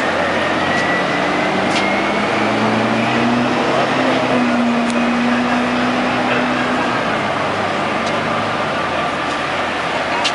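A parade float chassis's engine running as the float is driven slowly, with a steady hum that climbs a little in pitch between about two and five seconds in, a faint rising whine, and a few sharp ticks.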